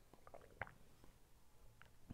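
Near silence, with a few faint swallowing and mouth sounds from a man drinking from a glass, the clearest a short click a little over half a second in.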